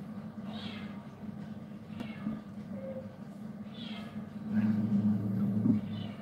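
A cat meowing: three short, high mews about a second and a half apart, over a steady low hum that grows louder near the end.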